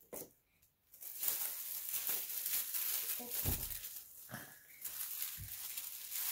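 Gift wrapping paper crinkling and tearing as a present is unwrapped, starting about a second in, with a couple of soft thumps.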